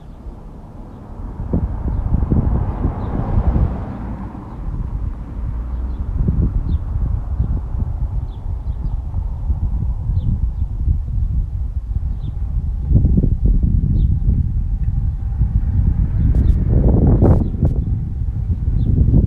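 Wind buffeting an outdoor microphone in gusts, with a car passing by a couple of seconds in and faint bird chirps. A louder rush comes near the end.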